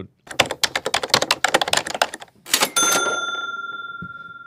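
Typewriter sound effect: a quick run of key clacks for about two seconds, then a single bell ding that rings on and fades slowly.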